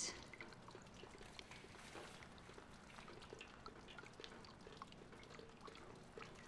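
Faint, scattered drips of water, as from a leaking roof into buckets.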